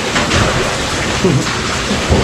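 Steady rushing hiss of falling water, with a brief low voice-like sound about a second in.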